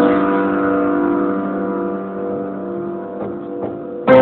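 Upright piano with a chord struck at the start and held on, slowly fading, with a few soft touches near the end.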